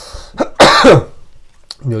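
A man coughs once, loud and harsh, about half a second in, the cough trailing off with a falling voiced rasp.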